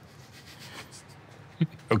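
Faint rustling and rubbing of clothing as a person moves, over quiet room tone.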